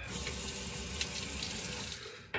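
A tap running steadily into a sink while rinsing between safety-razor shaving passes.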